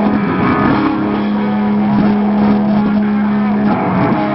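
Live punk rock band playing loud, with distorted electric guitars, bass and drums. A low note is held for about three seconds.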